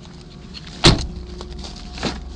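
A car door on a 2012 Ford Focus shutting with a single loud thump just under a second in.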